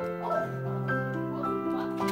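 Background music of held, overlapping notes changing in steps, with a brief voice-like sound about a quarter second in.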